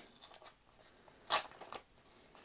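A paper envelope being peeled open by hand, its sticky sealed flap pulled loose with faint paper rustling and one short, sharp rip a little past halfway.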